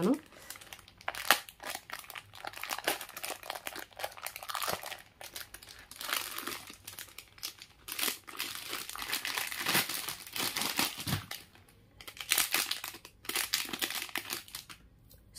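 Plastic wrapping crinkling and rustling as it is handled, in irregular crackles with a quieter spell about eleven seconds in.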